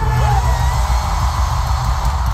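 Live concert music played through an arena PA: a sustained backing with a deep, steady bass.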